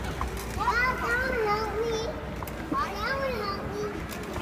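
A young child's high-pitched wordless babbling: two drawn-out sing-song vocalizations, the first about half a second in and the second near three seconds, over the background noise of children playing.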